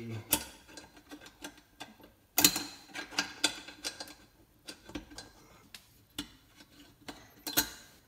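Small metal clicks and clinks of a Mossberg 535 pump shotgun's elevator (shell lifter) being fitted into the steel receiver by hand. A louder clack comes about two and a half seconds in, and another near the end.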